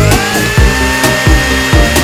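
Blender motor sound effect spinning up at the start into a steady high whine, laid over electronic background music with a steady beat.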